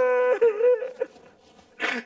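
A man moaning in pain from freshly pulled teeth, one drawn-out wavering moan that stops about a second in. A short breathy sound comes near the end.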